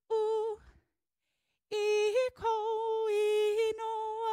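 A woman singing unaccompanied in slow, long held notes, the words of a hula song. One short note opens it, then after a pause of about a second the singing resumes and carries on steadily.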